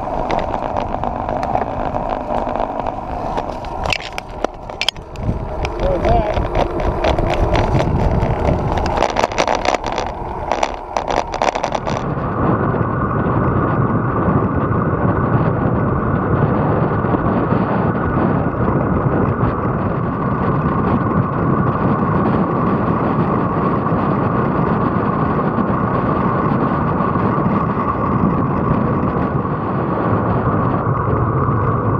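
Wind and road noise on a camera mounted on a road bike while riding. Rattling knocks and crackles fill the first dozen seconds, then it settles into a steady rush from about 12 s in.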